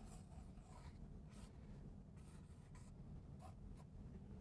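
Faint, short scratchy strokes of writing or drawing, several in a row.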